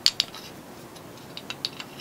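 Light metallic clicks and ticks of a lathe live center being handled and unscrewed by hand: a few sharp clicks at the start, then scattered small ticks from about a second in.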